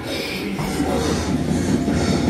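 A man breathing heavily and groaning with strain, a mock labour push.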